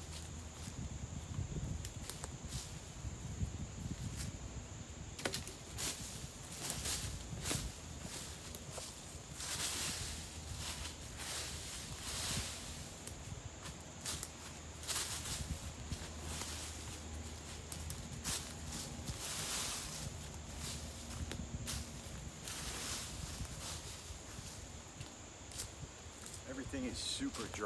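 Boots scraping and kicking dry leaf litter across the forest floor in irregular swishes, with shuffling footsteps, as the ground is cleared for a shelter spot.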